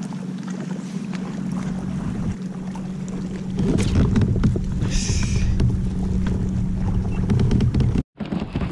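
Wind buffeting the camera microphone over a steady low hum, growing louder and rumbling from about four seconds in, with scattered small clicks and a short hiss about five seconds in.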